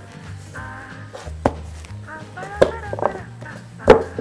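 Background music with a few sharp clicks and knocks as a collapsible plastic-and-silicone basket is handled and popped open on the counter; the loudest knock comes just before the end.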